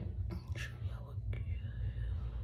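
A person's faint whispering over a steady low hum, with a few faint clicks.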